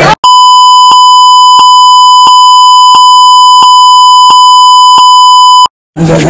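A loud, steady, high censor bleep tone edited in over the speech, lasting about five and a half seconds. A faint tick comes roughly every two-thirds of a second, where the looped beep segments join. It starts and stops abruptly, cutting the voices out.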